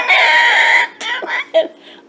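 A woman's high-pitched, cackling laughter: one loud held shriek of a laugh in the first second, then a few shorter breathy chuckles that trail off.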